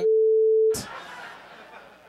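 A loud, steady single-tone censor bleep, about three-quarters of a second long, blanking out a word of the routine. It is followed by a burst of audience noise that fades away.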